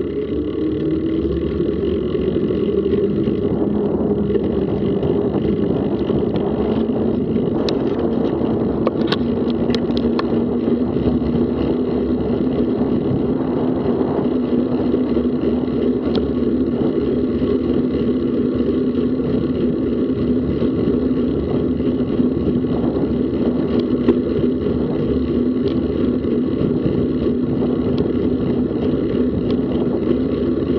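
Bicycle riding noise at about 25 km/h, picked up by an action camera's microphone: a continuous rush of wind and tyre rolling with a steady hum, and a few sharp clicks about a third of the way in from bumps in the path.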